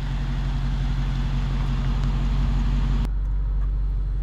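Car engine idling steadily, a low drone under an even hiss. About three seconds in the hiss drops away and the engine drone carries on, now heard from inside the car's cabin.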